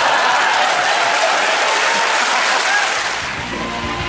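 Studio audience applauding loudly for about three seconds, then a sudden cut to instrumental theme music with a steady bass line.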